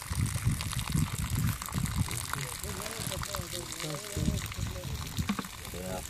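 Water running and trickling into a plastic tub of muddy concentrate wash, with low rumbling pulses and faint voices under it.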